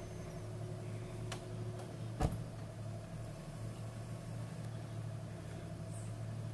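SUV engine running steadily at low revs as the vehicle crawls in deep mud, with a single sharp knock about two seconds in.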